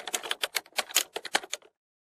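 A rapid run of sharp clicks, like typing keys, roughly eight a second, stopping abruptly a little before the end.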